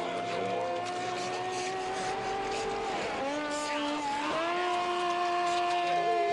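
Electronic music: sustained synthesizer tones that bend down in pitch about three seconds in, hold a lower note and slide back up about a second later, over faint high ticking percussion.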